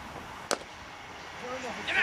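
A single sharp crack of a willow cricket bat striking the leather ball, about half a second in. Faint distant voices follow near the end.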